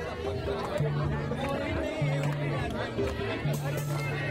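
Live folk dance music with long held low notes, under constant chatter from a large outdoor crowd.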